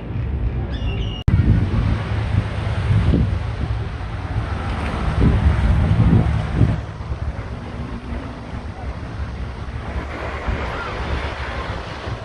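Wind buffeting the microphone with small waves washing onto a sandy beach; the gusts are strongest in the first half and ease off after. A few bird chirps are heard in the first second before the sound cuts to the beach.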